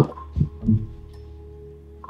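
Tense underscore from a TV drama: a low double thump like a heartbeat about half a second in, after a sharp thump at the start, over a steady sustained drone.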